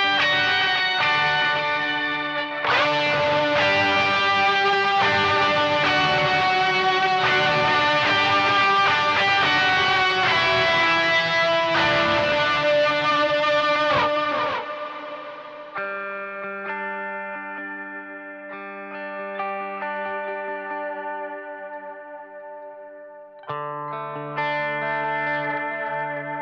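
Electric guitar played through a DSM Humboldt Simplifier DLX amp emulator: busy, dense picking and strumming for about the first fourteen seconds, then held chords left ringing more quietly, with a fresh chord struck near the end.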